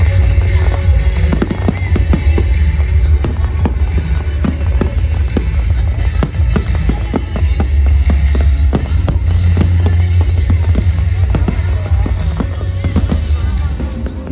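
Aerial fireworks bursting in rapid, irregular bangs and crackles over loud music with a heavy bass.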